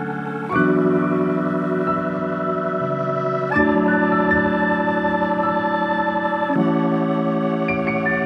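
Background music: sustained organ-like keyboard chords, changing to a new chord about every three seconds.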